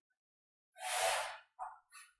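One short, scratchy stroke of chalk on a blackboard about a second in, followed by a faint tap.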